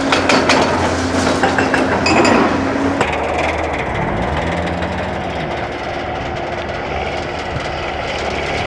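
Tracked excavator's diesel engine running on a demolition rubble pile, with clanks and cracks of concrete debris during the first three seconds. After that comes a steadier engine drone with noise.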